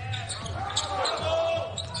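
Court sound of a basketball game in an almost empty arena: a basketball bouncing on the hardwood and voices ringing in the hall.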